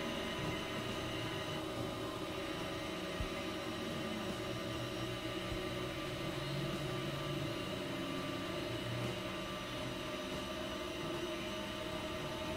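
Experimental electronic drone music: many steady, sustained tones layered over a hiss, holding level with no beat.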